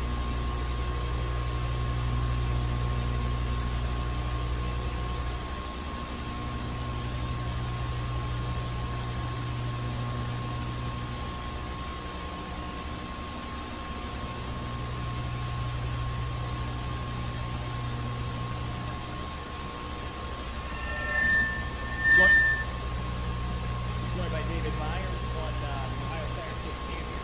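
Steady hiss and a constant hum from an old videotape recording, with a low drone that fades in and out every few seconds. About three-quarters of the way through comes a short high beep with a click.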